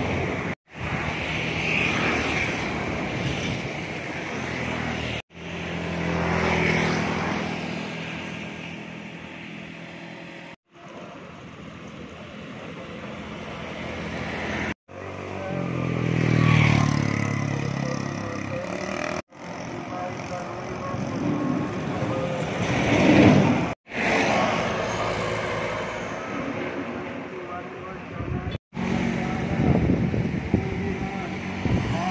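Road traffic: vehicle engines swelling and fading as they pass by, several times. The sound is chopped into short segments by abrupt cuts.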